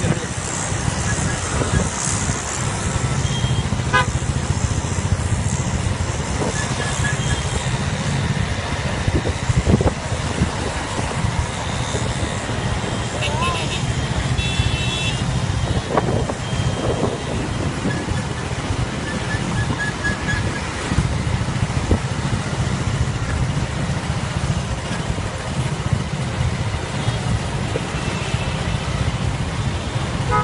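Highway traffic noise heard while riding among motorcycles: a steady low rumble of engines and wind on the microphone, with short horn toots now and then.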